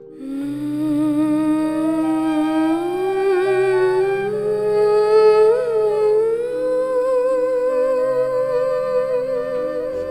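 Background music: a voice humming a slow melody that climbs gradually in pitch, over held low notes.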